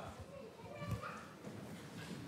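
Faint, scattered children's voices in a large room.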